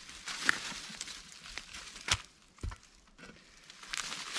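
A few light knocks and rustling as a steel T-post and an upturned T-post driver are handled, the sharpest knock about two seconds in followed by a dull thud.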